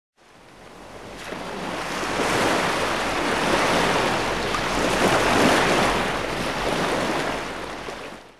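Rushing, wind-like noise sound effect for an animated logo intro: it swells up from silence over the first two seconds, holds steady, then fades out near the end.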